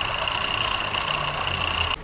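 Electric manjha-winding machines running steadily, a constant high whine over a low hum, as kite string is wound from large drums onto spools.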